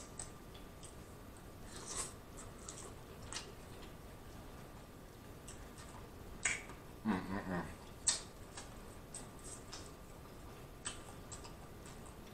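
Faint close-up eating sounds: scattered wet lip smacks and mouth clicks while chewing and sucking sauce off the fingers, with a short hummed "mm" about seven seconds in.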